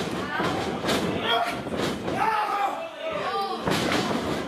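Wrestlers hitting the ring canvas during a move: a few sharp thuds on the mat, the loudest near the end as both men go down.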